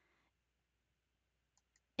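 Near silence, broken by two quick, faint computer mouse clicks near the end as an item is selected in the software.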